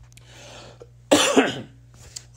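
A man coughs once, sharply, about a second in, after a soft intake of breath.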